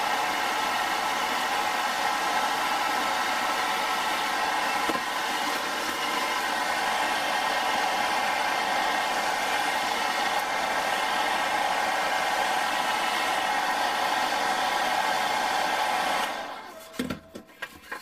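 Handheld hairdryer running steadily on its hottest setting, a rush of air with an even whine, heating a strip of polystyrene foam to soften it for bending. It is switched off abruptly about 16 seconds in.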